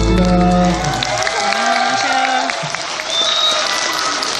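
Music through a hall's PA system ends on a held chord with a deep bass, fading out in the first second, followed by an audience clapping.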